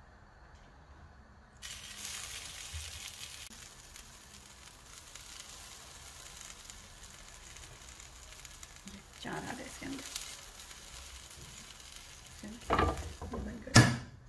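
Oil sizzling in a hot double-sided grill pan on a gas burner, a steady hiss that starts about two seconds in and slowly eases. Bread pizzas are set down in the pan with a few light knocks, and near the end the pan's hinged lid is shut with a loud clack.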